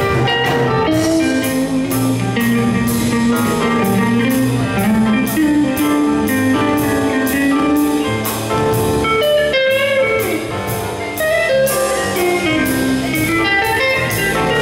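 Live jazz band playing: electric guitars, electric keyboard and drum kit, with a single-note melody line winding over the chords and a steady cymbal beat about three strokes a second.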